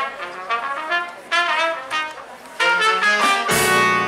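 Trumpet and tenor saxophone horn section playing a string of short, punchy phrases. Bass and drums come in with a hit about three and a half seconds in, filling out the band sound.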